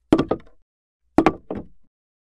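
Knocking on a door: two quick knocks, then about a second later a group of three.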